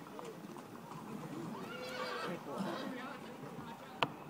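A horse's hooves clip-clopping on an asphalt road as it walks, with a horse whinnying about two seconds in.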